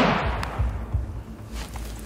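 The echo of a hunting gunshot rolling off through the woods and dying away over about half a second, followed by a faint low rumble.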